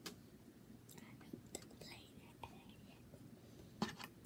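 Very quiet room with a few faint clicks about a second apart from small makeup items being handled, and a soft whisper in the middle.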